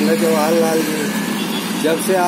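A man's voice speaking, with a short pause about halfway through, over a steady background hum.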